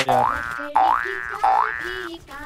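Cartoon 'boing' sound effect played three times in a row, each a springy upward-sliding twang, about two-thirds of a second apart.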